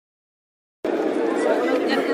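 Dead silence for almost a second, then a cluster of people talking over one another at close range, a press scrum's chatter with no single clear voice.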